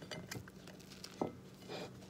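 Kitchen knife cutting through a quesadilla, the blade clicking and scraping on the plate in a few short strokes.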